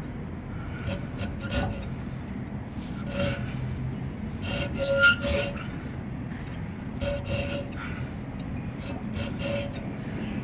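Coarse square hand file cutting a notch in a metal piece clamped in a bench vise: short rasping strokes at an uneven pace, about a dozen in all, the loudest few close together about halfway through.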